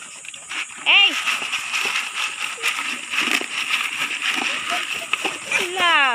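Native pigs, a sow and her piglet, feeding on banana leaves and chopped banana stalk: wet munching and crunching mixed with rustling leaves, a steady run of small crackles and clicks.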